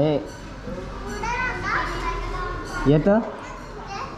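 A young child's voice making high-pitched rising calls about a second in, between a man's brief words at the start and near the end.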